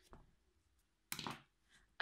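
Near silence: room tone, with one short soft noise a little after a second in.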